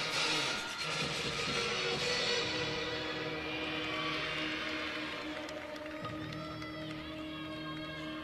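Gymnastics floor-exercise music playing as the accompaniment to the routine.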